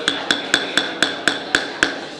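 A gavel rapped about eight times in quick, even succession, roughly four strikes a second, each strike with a short ringing tone: calling the meeting to order.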